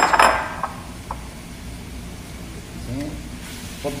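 A brief metallic clatter and clink of kitchenware against a cooking pan as chicken is tipped in, then one light clink about a second later.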